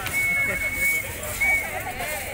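A dance whistle blown at one steady high pitch, a long blast then a short one, over women's singing voices and a few percussive knocks.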